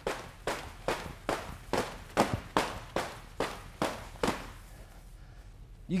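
An elastic battle rope slammed against the floor in a steady rhythm, about two and a half sharp slaps a second, stopping a little over four seconds in.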